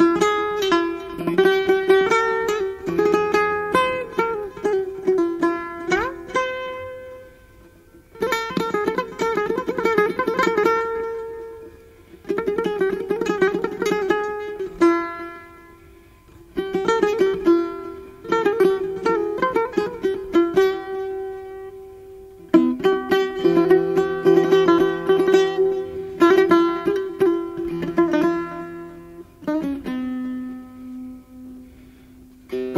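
Solo setar, the Persian long-necked lute, played in phrases of fast repeated plucking and single plucked notes that ring on. Short pauses separate the phrases.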